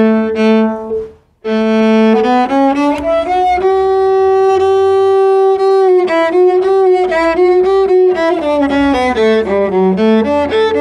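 Solo cello bowed, playing a slow melody of sustained notes. There is a short break about a second in, and one long held note in the middle.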